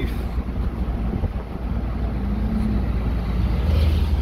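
Steady low rumble of a 1958 Edsel Citation's V8 and road noise, heard from inside the moving car.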